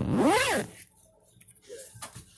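A zipper pulled once quickly, its pitch rising and then falling within about half a second at the start.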